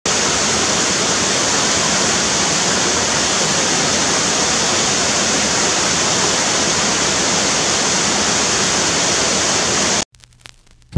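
Waterfall pouring over rock ledges into a pool: a steady, unbroken rush of falling water that cuts off suddenly at the end.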